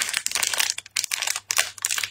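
Crinkling of a small plastic snack packet being handled and torn open at the top: a quick, irregular run of crackles.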